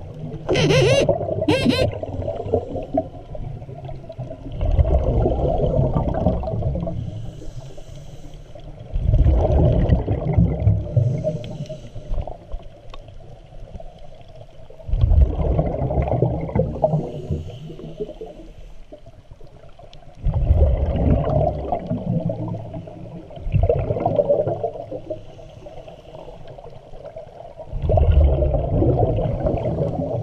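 Scuba breathing through a regulator, heard underwater: about every five seconds a loud, low rush of exhaled bubbles lasts two to three seconds, with quieter stretches between. Two short sharp hisses come about a second in.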